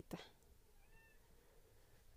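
Near silence, with one faint, short cat meow about a second in.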